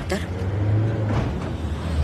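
City minibus engine rumbling low and steady as the bus drives past.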